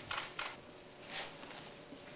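Faint, short scrapes and rustles of glowing hardwood coals on a long-handled metal shovel, three brief ones over a quiet room.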